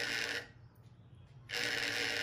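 Vibration motor of an S-68 colour-detecting gambling device buzzing twice, each buzz just under a second long: the first is already running and stops about half a second in, the second starts about a second and a half in. Two buzzes are its signal that the coins lie two of one colour and two of the other (sấp hai).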